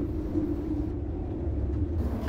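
A steady low rumbling drone with an even hum in it, running continuously beneath the drama's soundtrack.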